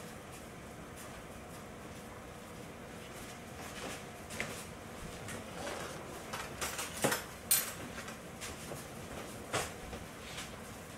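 Light clatter and knocks of kitchen items being handled at a counter, a few sharp clicks in the second half, over a steady low hiss.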